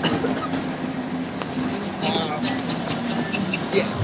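Steady low hum inside a passenger van, with voices in the background and a run of sharp clicks and rustles from about halfway through as people move about between the seats.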